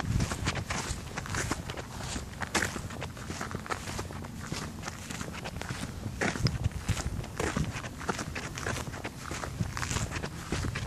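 Footsteps of a person walking at a steady pace, each step a short crunch or thud.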